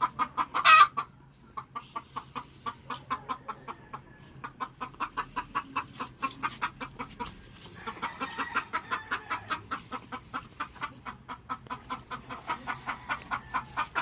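Caged gamefowl chickens clucking in a steady run of short clucks, about four a second. A louder sharp squawk comes about a second in, and a longer drawn-out call around eight seconds in.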